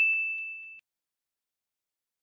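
A single bright, bell-like ding, an edited-in sound effect, ringing and fading away within the first second.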